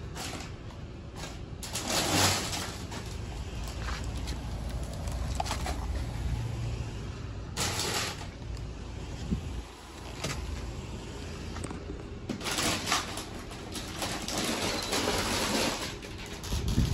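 Irregular rustling and scraping as a hand-held reach grabber pokes among discarded chip bags on a steel dumpster floor, in several short bursts over a low steady rumble.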